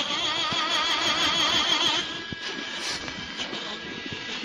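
Music from an old 78 rpm shellac record: a held note with heavy vibrato that stops about two seconds in, giving way to a quieter passage dominated by the disc's surface hiss and a few clicks.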